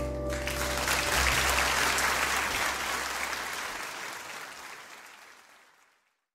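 Audience applauding as the band's final low note rings out and dies away. The applause then fades down steadily to silence at the end.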